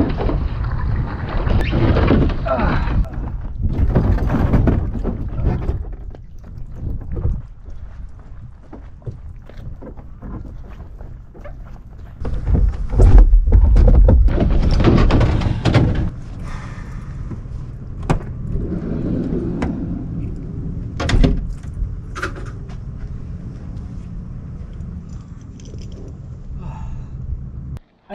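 Wind noise rumbling on the microphone mixed with handling noise as a sea kayak is hauled out of the water, loudest in a gust about 13 to 16 seconds in. Several sharp knocks and clunks of gear follow.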